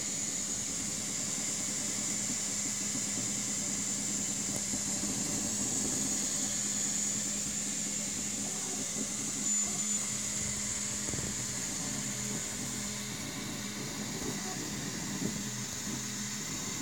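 Ultimaker 2 3D printer printing: its cooling fans give a steady high hiss while the stepper motors whir and buzz in shifting pitches as the print head moves.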